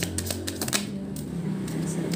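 A deck of Lenormand cards shuffled by hand: a rapid run of crisp card clicks that thins out after about a second. Soft background music with low, steady held notes runs underneath.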